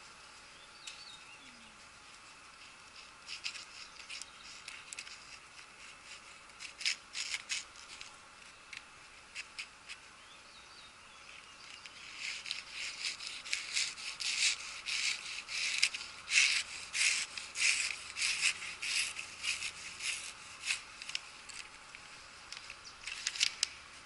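Newspaper crackling and rustling as it is handled and pushed down onto the edges of two carbon steel knives clamped in a vise, the blades slicing through the paper. The crackles are scattered at first, then come in dense runs through the second half.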